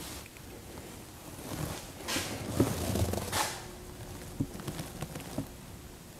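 Soft footsteps with light handling noise: a cluster of muffled steps and rustles in the middle, then a few small sharp knocks.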